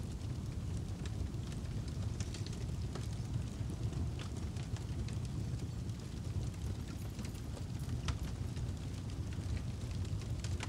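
Fire sound effect: a steady low rumble with scattered small crackles, like burning flames.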